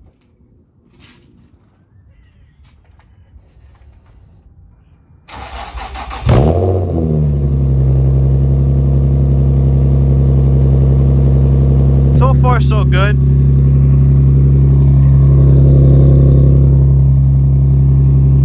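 Infiniti G35's V6 engine cold-started: about five seconds of near quiet, then a short crank, and the engine catches with a quick rev about six seconds in and settles into a loud, steady fast idle.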